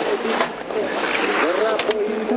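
A race commentator's voice over a steady rushing noise in a televised downhill ski race.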